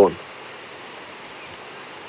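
A man's voice trails off at the very start, then only a steady, even hiss of background noise from the outdoor recording.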